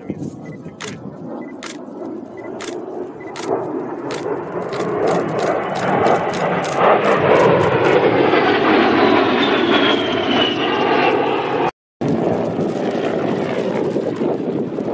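Military jet flyby: its engine noise grows steadily louder for several seconds, peaks, and then carries on with a faint falling whine as it passes. The sound drops out for a split second near the end before the noise resumes.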